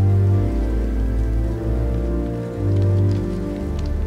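Pipe organ playing slow, sustained chords, with the bass note changing several times.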